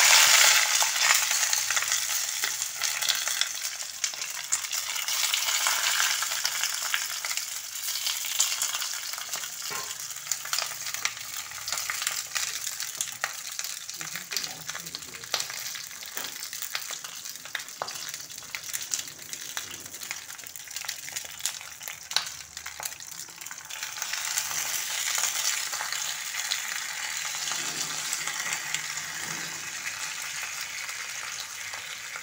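Sizzling and crackling from a hot kadai as a mustard-paste flat-bean mixture is spread on the banana leaf lining it. Loudest right at the start, it eases off, then swells again near the end.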